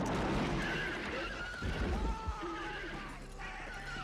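Western movie soundtrack: a horse whinnying in wavering calls, with a dull low thud about two seconds in.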